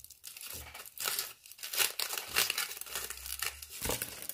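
Aluminium foil wrapped around a döner kebab being crinkled and peeled open by hand, in irregular bursts of crackling rustle.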